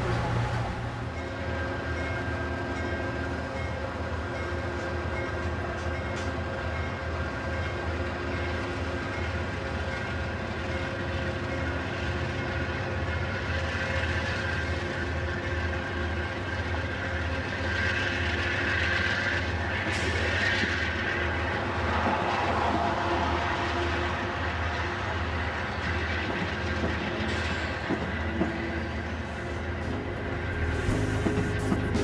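Amtrak passenger train running on the rails: a steady rumble with wheels clacking rhythmically over the track. It grows a little louder and fuller for several seconds around the middle.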